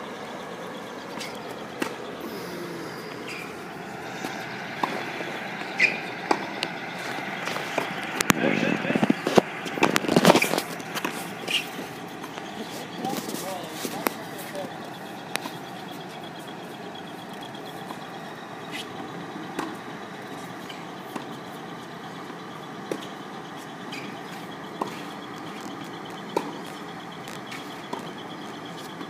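Tennis court sounds: people talking, with scattered sharp pops of tennis balls being hit at irregular intervals. It is busiest and loudest about eight to eleven seconds in.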